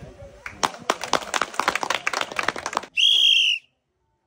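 Brisk clapping for about two seconds, then one short, loud, steady blast of a referee's whistle that cuts off suddenly.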